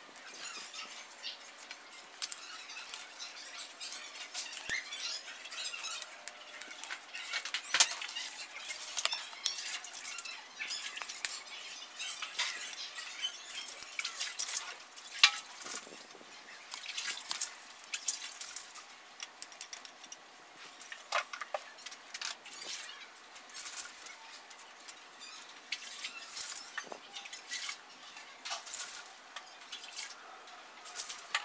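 Charcoal crackling and vegetable slices sizzling on a wire grill over a clay charcoal stove: a continuous, irregular patter of small pops and ticks, with a few sharper pops.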